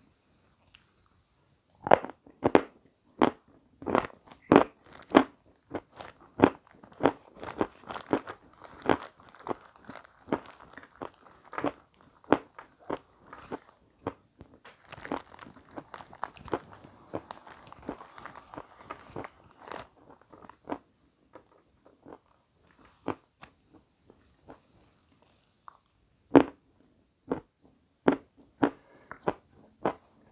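A mouth crunching and chewing a crisp meringue close to the microphone. The sharp crunches come a few a second, crowd together in the middle, then thin out to scattered crunches near the end.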